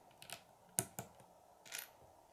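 Plastic Lego bricks clicking as they are picked up and pressed together by hand: a few sharp, separate clicks.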